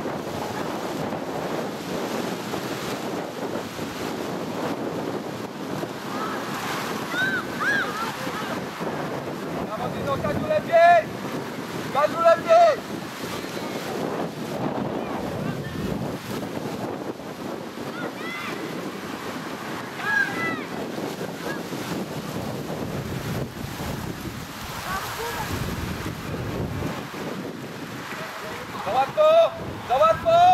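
Wind buffeting the camera microphone in a steady rough rush. Short shouted calls rise over it now and then, the loudest two close together near the middle.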